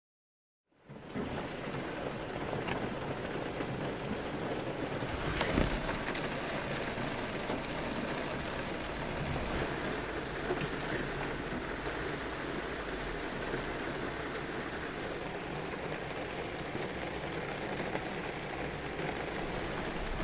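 Heavy rain drumming on a car's roof and windscreen, heard from inside the cabin: a steady hiss with scattered sharper drop impacts, starting about a second in.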